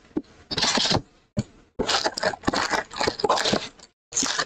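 A cardboard trading-card hobby box being opened and its foil-wrapped packs pulled out: scraping and rustling of cardboard and pack wrappers in bursts, with small clicks, busiest in the second half.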